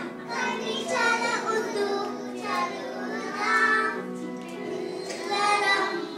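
A group of young children singing a song together, some into handheld microphones.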